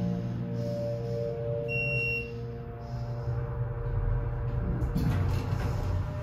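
Soft ambient music playing in an Otis hydraulic elevator cab, with a single high electronic beep about two seconds in, the car's arrival signal. Near the end the doors slide open with a rise of broad noise.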